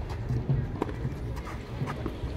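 Tennis ball being hit and bouncing during a rally on a clay court: a few sharp pops about a second apart, the loudest a forehand racket strike near the end.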